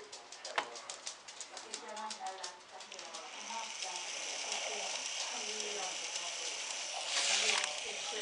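Electric motor and gearbox of an LGB garden-railway locomotive running on the bench under power from its controller, wheels turning in the air. A quick run of clicks gives way about three seconds in to a steady high whine, which gets louder near the end.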